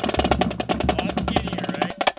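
Music with rapid, dense drumming over a steady bass line and a high gliding melody. The bass drops out near the end and the music cuts off sharply.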